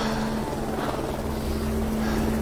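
A steady rumbling, noisy roar, like an engine or rotor heard from a distance, under a single low held note of background score.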